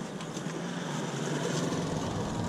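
A trail motorcycle riding slowly past at close range, its engine hum growing steadily louder as it approaches.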